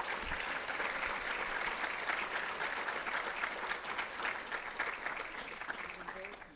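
Audience applauding: many hands clapping steadily, dying down near the end.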